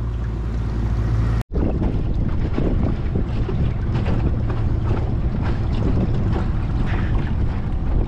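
Small fishing boat's engine running with a steady low hum while trolling; after a sudden cut about a second and a half in, wind buffets the microphone over the noise of the boat moving through the water.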